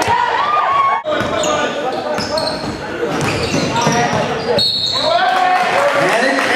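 Basketball game sound in a large gym: shouting voices and crowd noise ring through the hall over a basketball bouncing on the floor. The sound breaks off sharply about a second in and picks up again at another moment of play.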